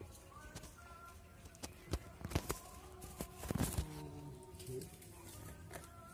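Several sharp knocks and clicks, bunched around the middle, the loudest about two and a half seconds in, over faint steady background tones.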